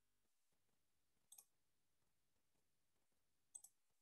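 Near silence broken twice by a faint double click, about a second in and again near the end, like a computer mouse button being pressed and released.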